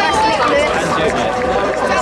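Spectators at a football ground talking and calling out, many voices overlapping at a steady level.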